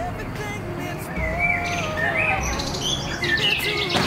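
Birds chirping, busier from about halfway, over a faint bed of music.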